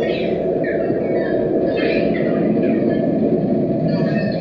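Live electronic noise music from a patch-cabled synthesizer setup: a thick, steady, low rushing noise with falling whistle-like sweeps above it, about one a second.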